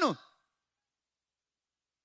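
The last syllable of a man's amplified speech falls off just after the start, then silence with no audible sound.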